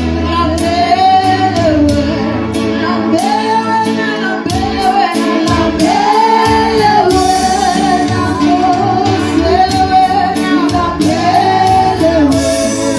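Gospel music: a singer holding long notes that rise and fall, over a bass line and a steady beat.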